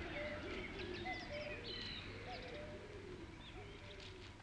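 Birdsong: several birds chirping and twittering with short calls, fading slightly toward the end.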